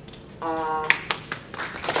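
A small audience clapping: a few separate hand claps about a second in, quickly thickening into applause near the end. Just before the first claps there is a brief pitched sound, like a short voiced call.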